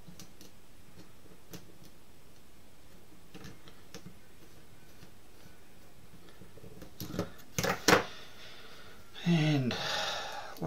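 Faint small clicks of screws and parts being handled, then a few sharp clatters about seven seconds in as the carbon-fibre quadcopter frame plate, fitted with metal spacer pins, is handled and set down on the table. Near the end a man gives a short wordless vocal sound.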